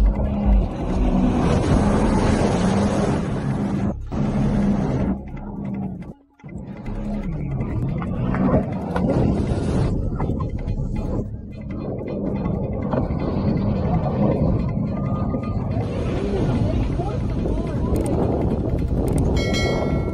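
Jet ski engines running and revving close to a boat, with rushing water and people shouting. The sound cuts out briefly about six seconds in.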